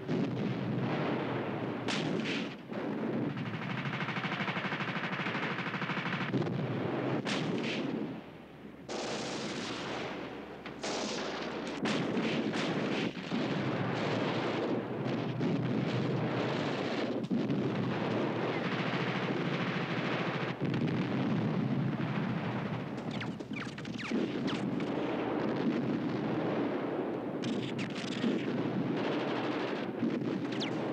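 Battle sounds of a city under siege: dense, continuous gunfire and machine-gun fire mixed with explosions.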